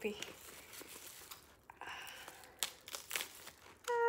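Packaging crinkling and rustling as a new handbag is handled and unwrapped, with a few sharp clicks about two and a half to three seconds in.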